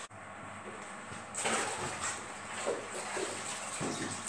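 A person walking up to and getting onto a parked motorcycle: quiet at first, then soft shuffling and rustling from about a second and a half in, with a couple of faint knocks.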